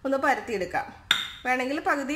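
A plate clinks once against a stone countertop about a second in, with a brief ringing tone after the knock. A woman is talking before and after it.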